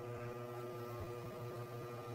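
A faint steady hum with a few faint held tones above it.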